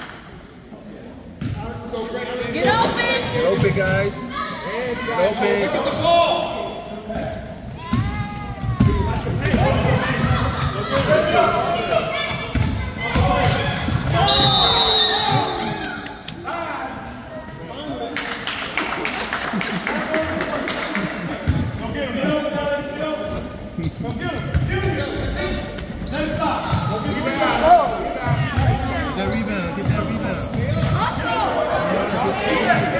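Youth basketball game in a gym: a basketball being dribbled and bounced on the hardwood floor, with players and coaches shouting, all echoing in the hall. A short, high referee's whistle blast sounds about halfway through.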